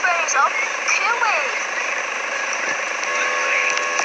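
A high-pitched voice making short sliding sounds over a steady hiss, followed by a steady hum with faint tones near the end.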